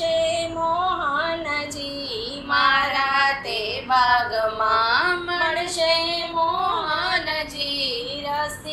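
A woman singing a Gujarati devotional kirtan in long, held, gliding notes.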